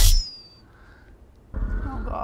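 TV drama soundtrack sound design: a loud low hit dies away just after the start, trailing a thin falling whistle, then a quiet stretch, then a deep rumbling swell begins about one and a half seconds in.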